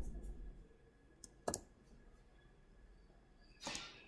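A few sparse, faint clicks of a computer keyboard being typed on, the sharpest about a second and a half in, with a short rustle near the end.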